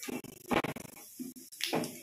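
Cumin seeds sizzling and spluttering in hot oil in an iron kadhai, a steady hiss broken by a few short, louder bursts.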